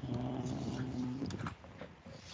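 A low, steady drawn-out hum from a voice, held at one pitch for about a second and a half before breaking off.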